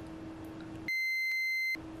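A single steady electronic bleep tone, a little under a second long, starts about a second in. All other sound cuts out beneath it, as with a censor bleep laid over the sound track. Before and after it there is only faint room tone with a low steady hum.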